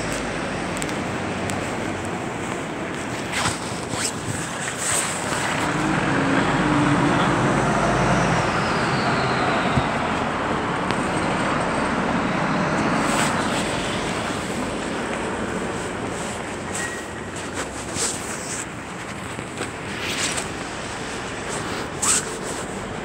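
City street traffic noise, louder through the middle as a vehicle passes, with scattered knocks and rustling from the handheld camera being carried.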